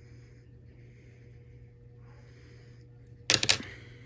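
Soft, regular breathing close to the microphone over a low steady hum, then about three and a half seconds in a short, loud crackling burst of handling noise as hands come in to the fly-tying vise.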